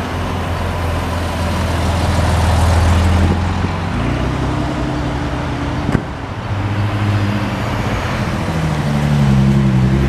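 Several car engines running at low speed as cars pull out and pass at a road junction. The engine notes hold steady, change pitch about four seconds in and waver near the end, and there is one short sharp click about six seconds in.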